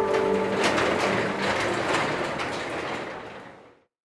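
Garage door rolling along its metal tracks: a rattling clatter of rollers that fades out near the end.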